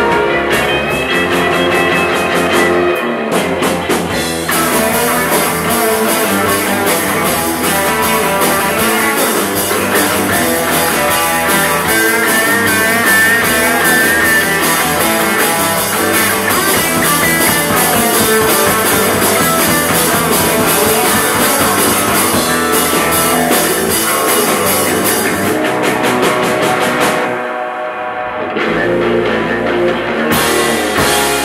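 Live instrumental surf rock band with electric guitars and a drum kit playing a fast number. The cymbals come in a few seconds in, and near the end there is a short break where the drums drop out before the full band comes back in.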